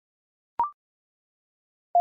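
A short electronic courtesy beep about half a second in: a click, then a brief tone that steps up to a higher note, marking the end of one Morse practice element. Just before the end, a steady Morse code tone starts keying the next element in dits and dahs at 40 words per minute.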